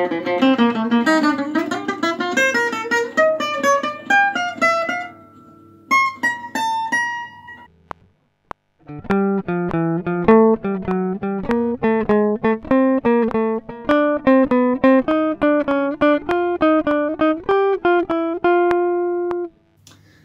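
Guitar playing a single-note neighbour-note riff in even eighth notes, climbing in pitch and stopping about eight seconds in. After a short gap, an archtop guitar plays the same pattern around every note of the B-flat scale, ending on a held note.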